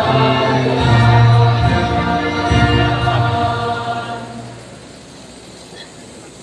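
Large group of graduates singing a hymn together, ending on a long held final chord that fades out about four and a half seconds in.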